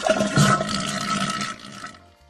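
Toilet flushing: a rush of water that lasts just under two seconds and fades away near the end.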